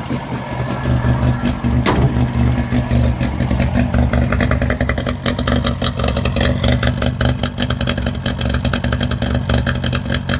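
1958 DKW 3=6's 900 cc three-cylinder two-stroke engine idling at about 1200 rpm when warm, heard at the twin tailpipes; its rapid, even exhaust pulsing comes through more plainly after a few seconds. A single sharp knock about two seconds in.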